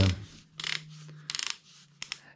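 Torque-adjustment collar of a Parkside Performance PSBSAP 20-Li A1 cordless hammer drill being turned by hand. It gives a short rubbing click about half a second in, then a quick run of detent clicks about one and a half seconds in.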